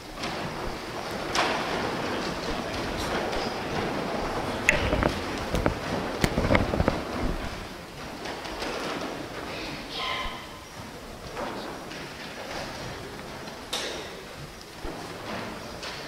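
People moving about in a large church: shuffling and low murmuring voices, with several dull thumps and knocks clustered about five to seven seconds in.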